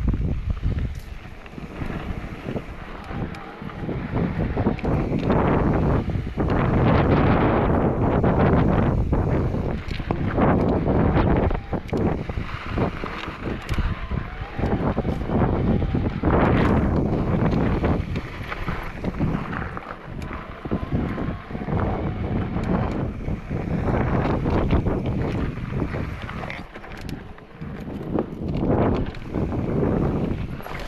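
Wind rushing over the microphone as an electric mountain bike rides fast down rough dirt singletrack. The noise rises and falls with speed, and tyre noise on the dirt and rocks runs through it, along with frequent short rattles and knocks as the bike goes over bumps.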